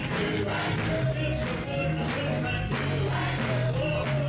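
Gospel praise music: voices singing together over a tambourine keeping a steady jingling beat, with low bass notes underneath.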